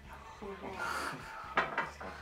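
Quiet, indistinct talk, with a brief knock about one and a half seconds in.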